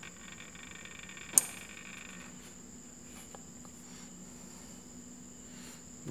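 A single sharp click about a second and a half in: the compressor relay on a Funiki air conditioner's indoor control board closing, switching the compressor output on. A faint steady high whine runs underneath, and a faint low hum comes in shortly after the click.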